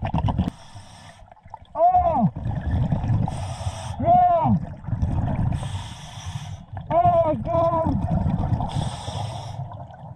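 Scuba diver breathing through a regulator underwater: short hissing inhalations alternate with louder bubbling exhalations, each carrying a wavering honk that rises then falls in pitch, a breath about every two and a half to three seconds.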